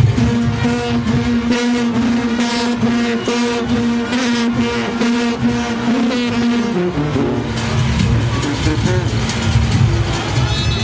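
Junkanoo brass section of sousaphones and trumpets playing loudly, holding one long low note for about the first seven seconds before moving on to other notes, over a steady beat.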